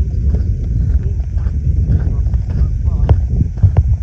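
Wind buffeting the microphone as a steady low rumble, with footsteps on dry dirt and gravel and faint voices of a group of people talking.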